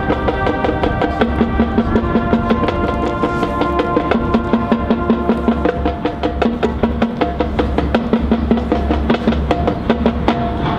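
High school marching band playing, with a drumline keeping up quick, steady strokes under horns holding long chords and a steady low bass line.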